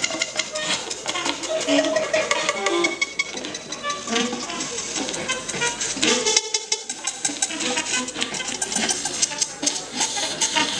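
Free-improvised experimental music on saxophone and live electronics: a dense scatter of short pitched fragments and clicks. The sound briefly thins out about six and a half seconds in.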